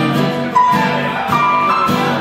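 Live blues on guitar: chords strummed in a steady rhythm, with higher held notes ringing over them.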